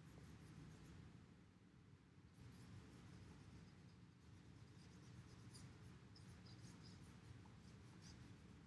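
Near silence with faint, soft, intermittent strokes of a wet paintbrush on watercolour paper as the paper is wetted with clean water.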